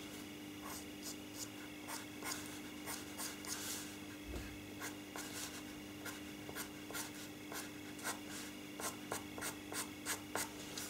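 Faber-Castell Pitt pastel pencil scratching over pastel paper sealed with fixative, in many short, quick strokes as light fur hairs are drawn in.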